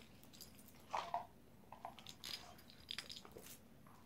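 Faint handling sounds: scattered soft clicks and rustles as a paper booklet and cards are handled, with a slightly louder rustle about a second in.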